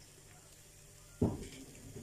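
Quiet kitchen room tone, then a single short low thump a little over a second in.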